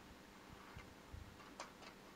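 A few faint snips of scissors cutting paper.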